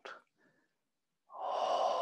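A person's long, steady out-breath, a deliberate exhale in a breathing exercise. It begins about a second in, rising quickly and then holding on.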